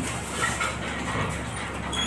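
A man chewing a mouthful of pan-fried dumplings, irregular mouth sounds over a steady low hum.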